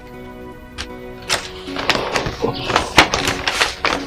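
Background film score with held notes. Over it, from about a second in, comes a run of sharp crackling rustles, typical of paper being handled.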